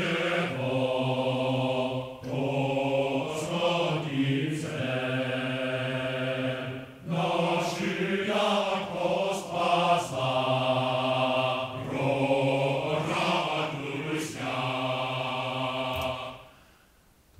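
Sampled male choir from Soundiron's Mars Symphonic Men's Choir library singing held, chant-like syllables together. The words are made by crossfading two tracks of poly-sustain samples, so each held note gives way to the next every second or two.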